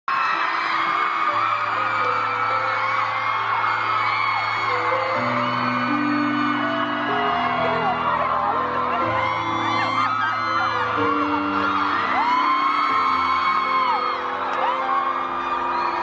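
A song's instrumental intro played live over a concert sound system, with held chords and a slow bass line. Many high-pitched screams and whoops from a crowd of fans rise and fall over it throughout.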